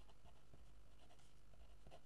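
Faint scratching of a pen writing in cursive on paper, a quick irregular run of short strokes.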